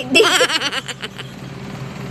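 A woman laughs briefly in the first second, then a steady low hum with a fixed pitch carries on by itself.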